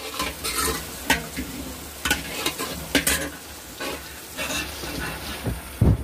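Metal spoon stirring and scraping around an aluminium pan with irregular clinks, over sizzling oil. A heavier knock comes just before the end.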